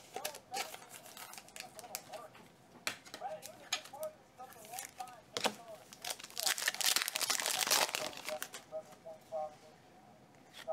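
Plastic card sleeves and top loaders clicking and rustling as trading cards are handled, with a louder stretch of crinkling about six to eight seconds in.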